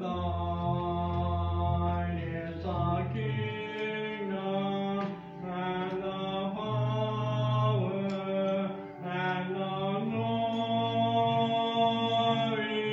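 Church congregation singing a slow hymn in long held notes over sustained accompanying chords and a low bass line that moves every second or two.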